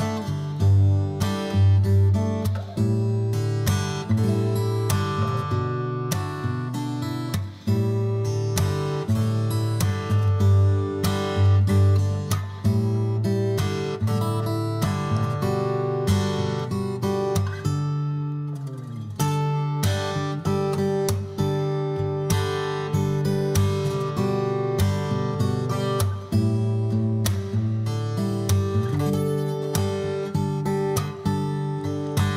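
Background music: acoustic guitar strumming chords in a steady rhythm.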